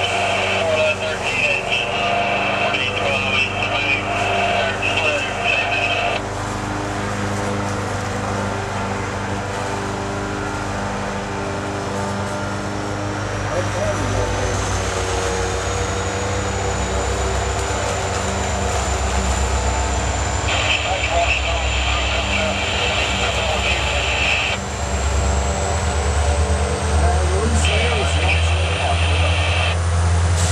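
Approaching EMD SD70MAC diesel-electric locomotive: its 16-cylinder two-stroke diesel engine rumbles louder as it draws near, with a thin high whine, typical of AC traction equipment, climbing steadily in pitch through the second half. A separate high buzzing hiss comes and goes three times.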